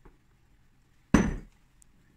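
A glass bowl set down on a wooden worktop: one sharp knock with a brief ring, a little past the middle.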